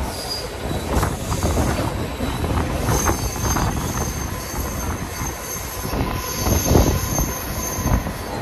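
Suburban electric local train running along the line, heard from its open doorway: a steady rumble of wheels on rails. A thin high wheel squeal comes in about three seconds in.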